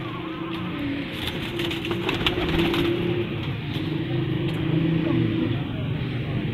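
Domestic pigeons cooing in a loft: low, wavering coos that run on with brief breaks. A few sharp flaps and scuffs in the first half.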